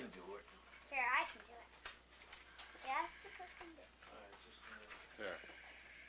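Brief snatches of indistinct speech in a high, child-like voice, about one, three and five seconds in, with quiet room sound between.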